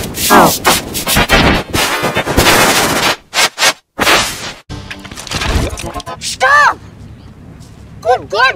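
Heavily distorted, clipped audio from an effects-processed edit. Harsh crackling bursts over a mangled voice fill the first three seconds, the sound drops out briefly, and a short warbling voice-like sound comes near the end.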